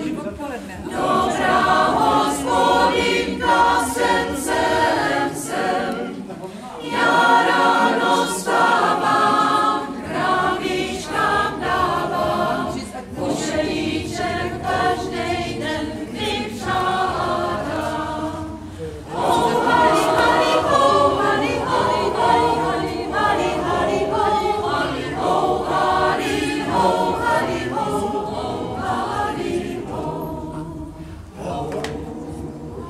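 Mixed choir of women's and men's voices singing a Czech folk song, in phrases with short breaks between them.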